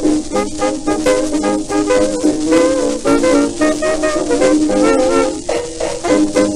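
Instrumental passage of a 1920s dance-band foxtrot played from a 78 rpm shellac record: a dance orchestra plays the tune over a steady, even beat, with no singing yet.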